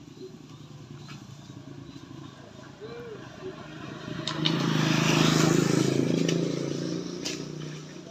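A small engine runs low and steady, then a motor vehicle passes close by on the road. Its engine grows loud about four seconds in and fades away about three seconds later.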